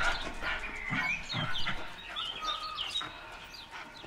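Birds chirping and whistling, many short quick notes that slide in pitch, with a couple of soft low thuds about a second in.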